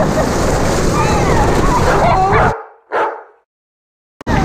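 Rush of wind and water on an action-camera microphone as a tube is towed fast over a lake, with girls laughing and squealing over it. The sound drops away about two and a half seconds in, with one short burst just after, then silence.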